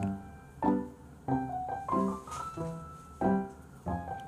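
Background music: a light piano melody, one note after another with each note ringing out briefly.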